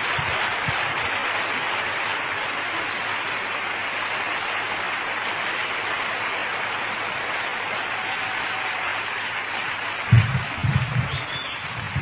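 Audience applauding steadily, with a few low thumps near the end.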